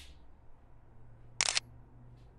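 Smartphone camera shutter sound: one short, sharp snap about one and a half seconds in as a photo of the subpanel is taken, over a faint steady low hum.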